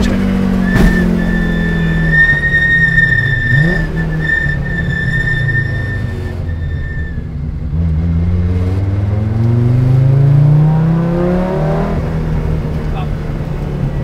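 Audi Sport Quattro S1's turbocharged five-cylinder engine heard from inside the cabin on the move: the revs fall away for several seconds, then climb steadily again. A thin, steady high whine sits over the engine through the first half.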